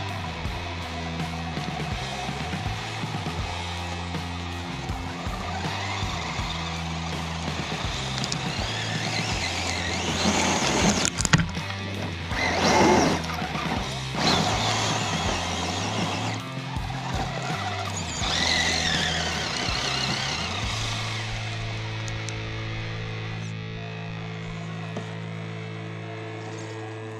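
Background music with low notes changing in steps, over an RC scale crawler's motor and its tires spinning and scrabbling in loose dirt and rock. The scrabbling is loudest in bursts from about ten to fourteen seconds in, and the motor's pitch wavers up and down a few seconds later.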